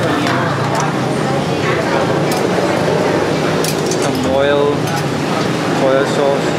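Busy noodle-shop hubbub: overlapping voices, with scattered clinks of metal utensils and china bowls. One voice stands out briefly about four and a half seconds in.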